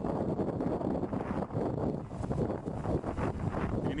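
Strong wind buffeting the microphone, a rumbling rush concentrated in the low end that rises and dips in gusts.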